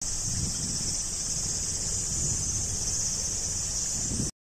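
Steady, high-pitched chorus of cicadas singing without a break, with low wind buffeting on the microphone underneath.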